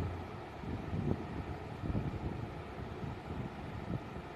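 The last low note of the karaoke backing track fades out in the first moment, leaving a faint, uneven low rumble of microphone noise from a handheld phone.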